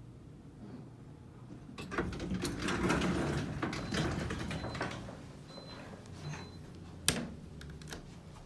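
Elevator doors sliding open, a noisy rattle of the door mechanism starting about two seconds in and dying away. A single sharp click follows near the end.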